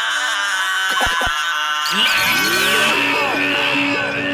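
Hip hop beat with its bass dropped out: high held synth notes, a few short falling sweeps, and a low note coming back in about three seconds in.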